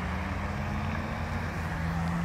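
Road traffic at a roundabout: vehicle engines running as they drive past, a steady low hum with an engine note that drops in pitch near the end.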